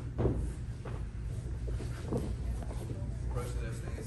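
Brief, scattered human voices, short calls and murmurs, heard about three times over a steady low hum.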